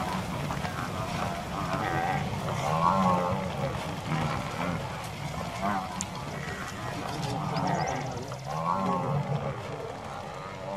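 African buffalo bellowing, a run of long, low calls one after another.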